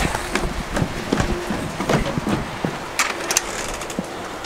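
Handling noise from a handheld camera carried by a walking person: rustling with irregular knocks and footfalls.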